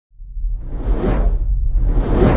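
Cinematic whoosh sound effect rising out of silence over a deep bass rumble, swelling to a peak about a second in and falling away, with a second whoosh starting near the end.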